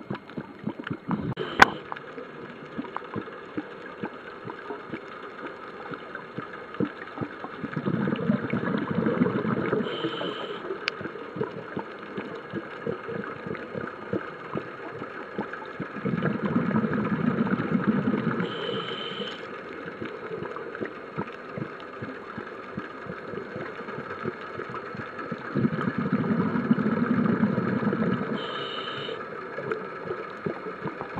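Scuba diver breathing through a regulator underwater: three long rumbles of exhaled bubbles about nine seconds apart, each followed by a short, higher hissing tone of the next breath drawn in. Underneath runs a constant faint crackle, with one sharp click near the start.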